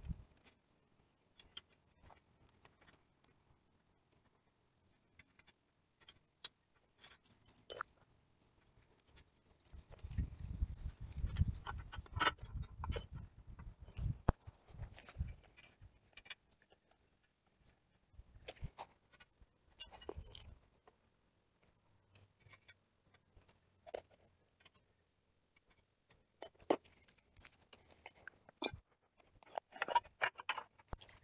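Scattered light metal clinks and taps as curved metal hoop segments and screws are handled and fitted together, with a longer stretch of low rumbling and clicking from about ten to sixteen seconds in. The hoop segment being fitted is a tight fit.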